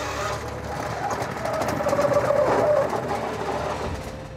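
Wash plant running again just after a restart: the trommel's belt-driven motor runs while the trommel turns with rocks and water, the noise growing louder toward the middle. The motor had stalled under the weight of the load, which the crew puts down to a stretching belt.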